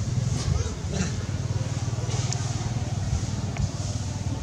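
Steady low rumble with faint voices in the background and a few small clicks.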